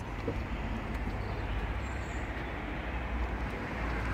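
Steady outdoor background noise: a low rumble under a soft, even hiss, with no distinct knocks or clicks.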